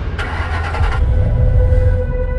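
Car engine sound effect: a deep rumble throughout, with a rush of noise in the first second, under a steady held musical tone that comes in partway through.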